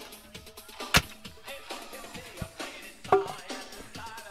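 Background music with drums, over a spade digging into stony soil, with two sharp strikes about a second in and shortly after three seconds.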